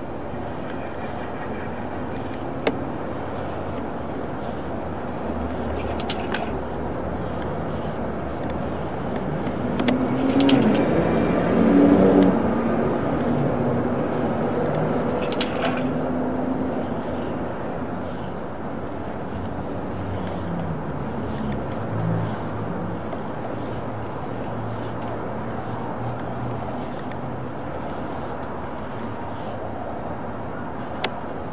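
A steady low mechanical rumble, swelling louder from about ten to thirteen seconds in, with a few sharp clicks.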